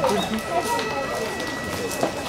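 Chatter of an outdoor crowd of onlookers, several voices overlapping, with the footsteps of a slow procession walking on a paved path. A faint steady high tone runs underneath.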